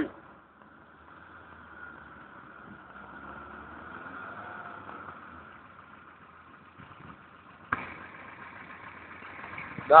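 A distant car engine, faint, swelling and easing off as the car slides sideways through a drift on snow. A sharp click comes about three-quarters of the way in, followed by a steadier hiss.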